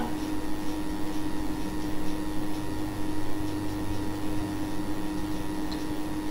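Steady background hum with a low hiss and no speech, a few constant tones running through it without change.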